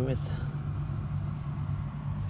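Steady low hum of a caravan's air conditioner running.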